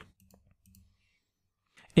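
A few faint computer-mouse clicks against near silence.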